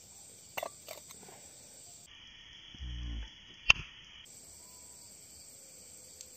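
Crickets chirring in a steady high drone, with two light knocks about half a second in and a short low rumble around the three-second mark. One sharp click, the loudest sound, comes just after the rumble.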